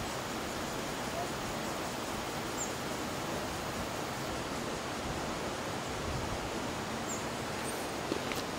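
Steady, even rushing noise of flowing water, with no change in level throughout.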